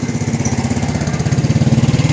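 A small engine running close by with a rapid, even pulse, getting louder over the two seconds.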